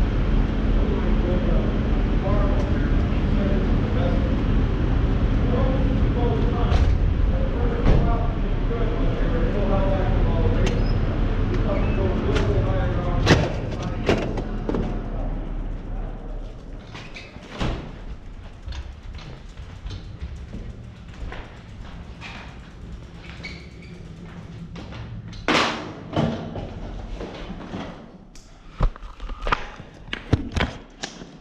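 Steady low rumble with faint, indistinct voices for about the first half. It then grows quieter, with scattered knocks, clicks and door bangs, a cluster of them near the end.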